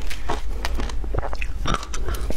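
Shaved ice crunching as it is chewed, a rapid, irregular run of sharp crackles, picked up close by a clip-on microphone.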